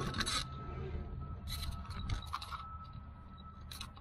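Metal scraping and a few sharp clicks as a tractor's PTO driveshaft yoke is worked against its mount, trying to get it to click back into place. A steady low rumble runs underneath.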